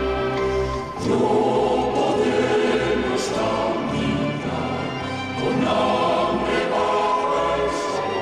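Choir singing a slow sacred hymn over a sustained instrumental accompaniment with a stepping bass line; the music swells about a second in and again past the middle.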